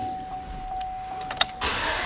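A vehicle's steady, lightly pulsing warning chime sounds, with a click about a second and a half in. Near the end the chime stops and the starter cranks the 2010 Chevrolet Silverado's 4.8-litre Vortec V8.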